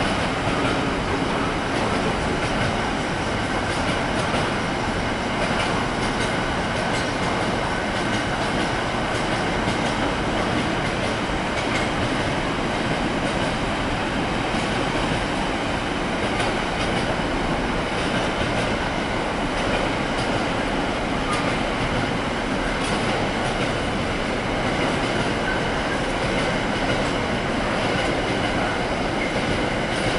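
Loaded container wagons of a long freight train rolling past at speed on the fast line. A steady rumble of steel wheels on rail, with faint clicks scattered through it.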